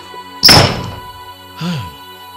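A door banging shut once, a sharp thud about half a second in, over steady background music.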